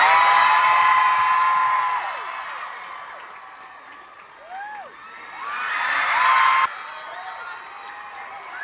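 Large theatre audience screaming and cheering, full of high-pitched shrieks and whoops. It is loudest at the start and dies down over a few seconds, then swells again before breaking off suddenly about two-thirds of the way through.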